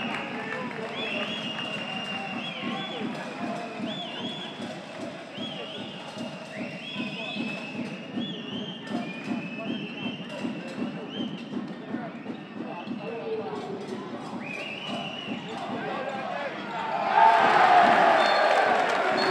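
Handball game sounds: players' shoes squeaking on the court floor and the ball bouncing, over crowd noise. Near the end the crowd breaks into cheering and applause.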